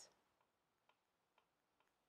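Near silence with a few faint, even ticks about twice a second: a small clock ticking in the room.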